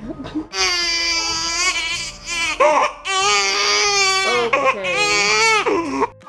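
A baby crying in three long wails, each ending with a falling pitch.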